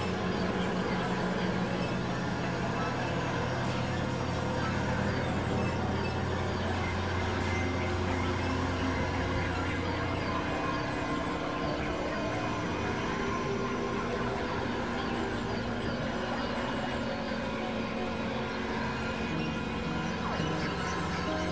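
Experimental electronic drone music: dense layers of sustained synthesizer tones over a noisy wash, with a strong low hum that drops away about halfway through.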